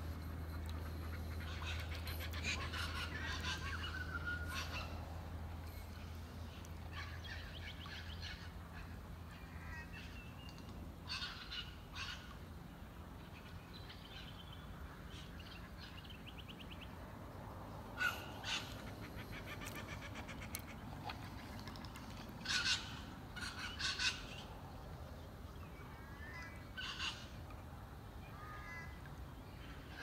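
Wild birds calling in scattered short bursts, some trilled. A low steady hum sits beneath for the first several seconds and then fades out.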